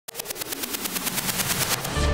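A logo-intro sound effect: a rapid, even rattle of sharp clicks, about a dozen a second, growing steadily louder as a build-up.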